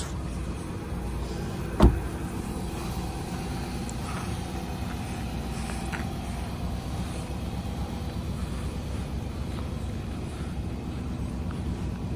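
A pickup truck's V8 engine idling with a steady low hum, and a single sharp thump about two seconds in.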